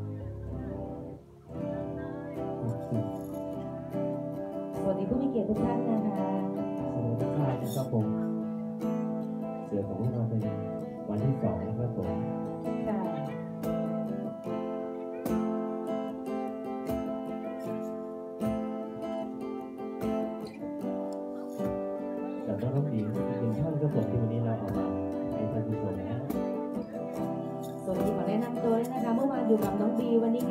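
Live acoustic guitar playing with a singer's voice over it. The music dips briefly about a second in and grows louder near the end.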